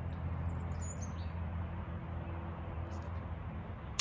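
A small bird gives several short, high chirps in the first second or so, over a steady low outdoor rumble.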